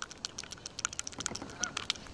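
A rapid, irregular run of small clicks and rubs: handling noise from a hand-held camera being moved about right against the face and shirt.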